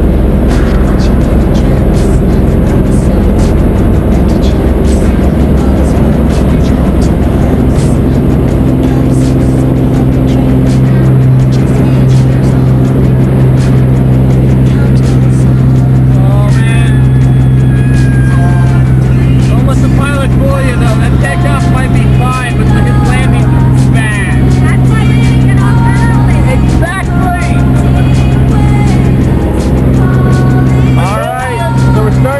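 Single-engine propeller plane's engine heard from inside the cabin, a steady drone that grows louder and settles about eight seconds in, as at takeoff and climb power.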